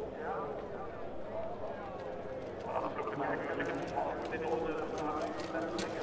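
Trackside spectators calling out and cheering as a cyclocross rider passes, several voices overlapping, with scattered sharp clicks from the course growing denser near the end.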